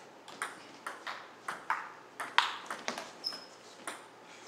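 Table tennis rally: the ball clicking off the paddles and bouncing on the table, about three hits a second, with one louder hit midway, and a short high squeak about three seconds in.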